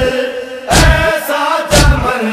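A group of men chanting a noha in unison, their held notes sliding in pitch. Two heavy chest-beating (matam) thumps fall about a second apart, one near the middle and one near the end.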